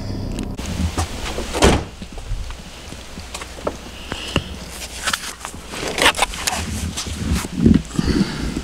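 Handling noises and scattered knocks as a person reaches into a car's back seat for a backpack and gets out of the car, ending with a heavy thud near the end, typical of a car door closing.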